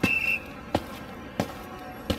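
Cartoon footstep sound effects, sharp taps about two-thirds of a second apart; the first comes with a brief high squeak. A steady background hum runs beneath them.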